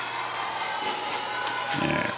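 HO-scale model diesel locomotive running along the track: a steady low hum with thin high whines, one of them falling slowly.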